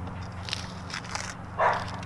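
Masking tape and paper being peeled and torn off a convertible soft top, crackling in short bursts, with a louder short burst near the end. A steady low hum runs underneath.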